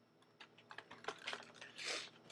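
Faint, irregular light clicks and taps starting about half a second in, with a brief louder rustle near the end.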